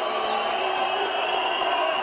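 An arena crowd cheering a fighter's ring introduction, a steady wash of crowd noise with a faint steady tone underneath.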